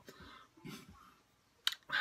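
A short pause in a man's talk: a soft breath, then a single sharp mouth click just before he starts speaking again.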